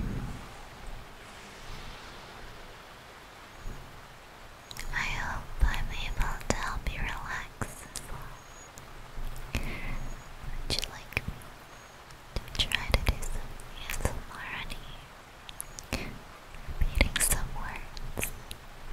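A woman whispering close to the microphone in short, breathy phrases, with a few small clicks between them.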